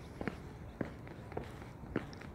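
Footsteps of one person walking at a steady pace on a concrete sidewalk, four steps about half a second apart.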